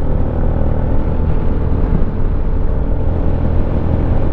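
Steady low rumble of a Benelli VLX 150 motorcycle being ridden, its single-cylinder engine running evenly under wind noise at the rider's position.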